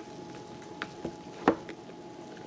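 Packaging being handled: crumpled clear plastic wrap and the cardboard box give a few light, sharp clicks over a quiet background, the loudest about one and a half seconds in.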